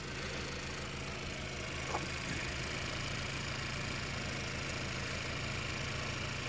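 A GM Ecotec car engine idling steadily under the open hood, with a faint click about two seconds in.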